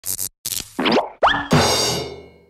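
Short cartoon intro sting made of sound effects: two quick sharp taps, then two quick upward pitch slides, ending on a bright ringing hit that fades out.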